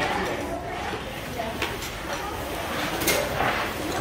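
Background chatter of many people talking at once in a large, echoing hall, with a sharp knock of handled items about three seconds in.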